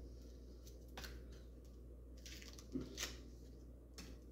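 Faint crinkling and ticking of the foil capsule being worked loose on a champagne bottle's neck, with a few sharper clicks about a second in and near three seconds.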